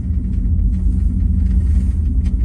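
Steady low rumble with a faint hum, heard from inside a moving cable-car gondola as it rides along the cable.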